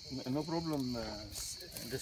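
A steady, high-pitched chorus of insects buzzing, with a man talking over it in the first half.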